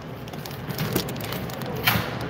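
Crinkling and rustling of a plastic bait package being taken off a display peg and handled, with a sharper crinkle near the end.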